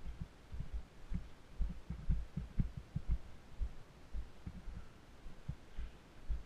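Muffled low thumps from the wearer's footsteps and body movement, carried through a body-worn GoPro in its housing; they come irregularly, several a second.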